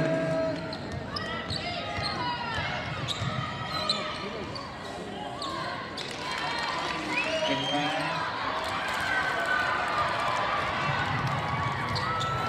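Basketball being dribbled on a hardwood gym court during a game, with players' shoes squeaking in short high glides, amid voices echoing in the gym.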